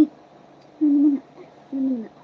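Short, steady, low 'ooh'-like vocal sounds, three in a row: a voice cooing playfully with a baby.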